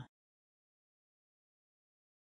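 Near silence: a dead-silent pause, with only the very end of a spoken word in the first instant.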